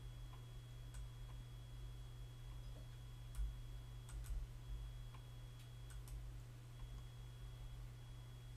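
Faint, scattered clicks of a computer mouse, a few single clicks and a close pair, over a steady low hum.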